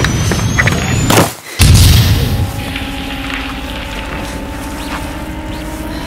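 Film-trailer explosion sound effects: rumbling blast noise, a brief drop-out, then a sudden deep boom about a second and a half in that fades into a held, droning musical chord.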